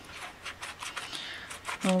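A ball-tipped embossing tool stroked down the paper petals of a die-cut flower against a mat: a run of light, quick scratchy rubbing strokes that curl the petals up.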